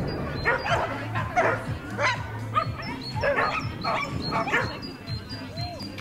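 A dog barking over and over, about two barks a second, over a steady low hum.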